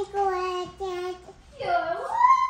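A toddler's high voice in a sing-song "thank you, ate", the syllables drawn out as long held notes, then a swooping rise near the end.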